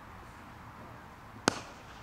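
A single sharp crack of a cricket bat striking the ball, about one and a half seconds in, over faint steady outdoor background noise.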